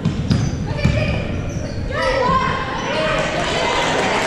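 Basketball dribbled on a hardwood gym floor, a few sharp bounces in the first second. From about two seconds in, people shout and call out in the echoing gym.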